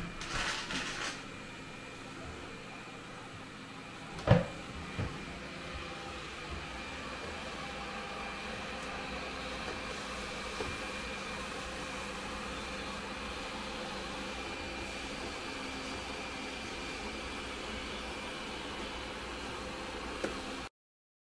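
Robot vacuum cleaner running: a steady whirring hum with a faint high whine. It is preceded by a few light clatters at the start and a single sharp knock about four seconds in.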